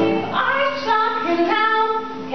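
A woman singing a show-tune melody in held notes that step from one pitch to the next.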